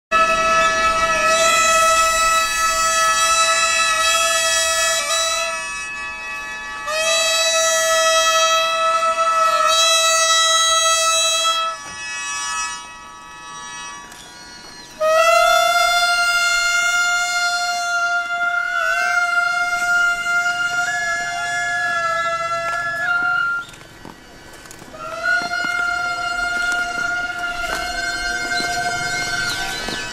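Gagaku processional music on transverse bamboo flutes: a melody of long held notes with small slides between them, played in three phrases with short breaths. The second phrase jumps up an octave, and fainter steady tones sound underneath.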